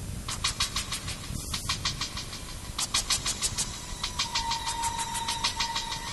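Electronic intro sound: runs of rapid, evenly spaced ticks at about six a second over a steady high tone and a low rumble. A second run of ticks starts about three seconds in.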